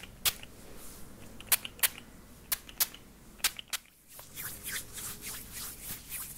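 A few short hissing spritzes from a small fine-mist pump spray bottle onto a hand in the first few seconds. Then, from about four seconds in, a softer steady rustle of palms rubbing together.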